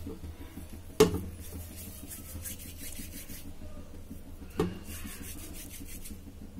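Hands rolling soft mawa dough between the palms into small sticks, a quiet rubbing. Two sharp knocks come about a second in and again about four and a half seconds in.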